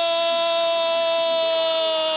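Arabic football commentator's long, drawn-out goal cry, one loud voice held on a single steady high note to celebrate a goal.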